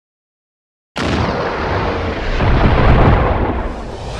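Logo intro sound effect: after about a second of silence, a sudden loud, deep rumbling blast of noise cuts in, swells for a couple of seconds and then starts to ease off.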